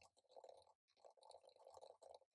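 Near silence with faint, quick typing on a laptop keyboard, the keystrokes coming in short irregular runs.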